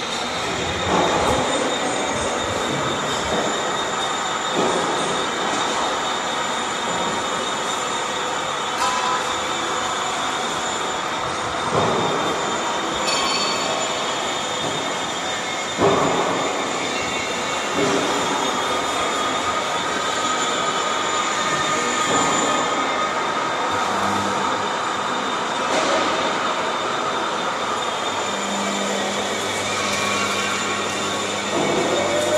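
Steady factory machinery noise in a roll forming machine plant, with high whining tones, a scattering of sharp knocks (the loudest about halfway through) and a low hum coming in near the end.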